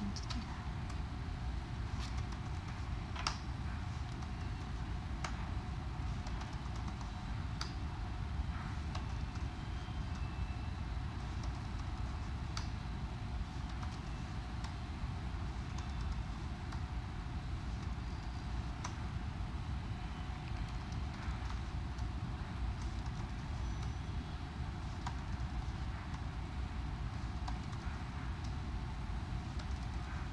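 Slow, irregular typing on a computer keyboard: scattered single key clicks over a steady low background hum.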